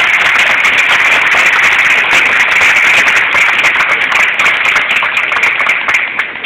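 Audience applauding: dense, steady clapping from many hands that begins to thin out right at the end.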